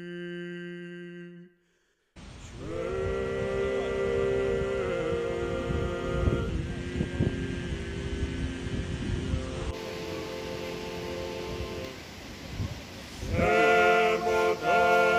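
Men's vocal quartet singing a cappella in long held chords, Georgian polyphonic style, with wind rumbling on the microphone. A held note fades out near the start and the sound drops out briefly before the singing resumes about two seconds in.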